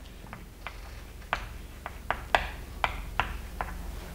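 Chalk writing a word on a blackboard: a string of about ten sharp, irregular taps as each stroke hits the board.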